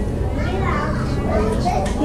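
Background chatter of several voices, children's among them, over a steady low rumble.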